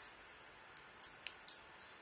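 Three quick, sharp little clicks about a quarter second apart, from a hand-held garage-door remote key fob being handled and its buttons pressed.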